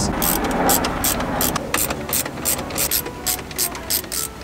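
Ratcheting driver with a T20 Torx bit backing out screws, its pawl clicking about three to four times a second.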